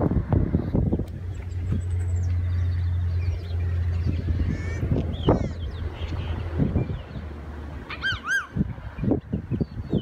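Wind buffeting a handheld microphone outdoors, a steady low rumble with irregular thumps that eases off after about seven seconds. About eight seconds in, a bird gives two quick rising-and-falling calls.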